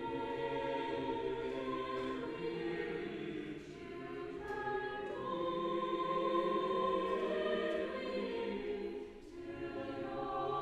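Church choir singing a carol in long, sustained phrases, with short breaks between phrases about four seconds in and near the end.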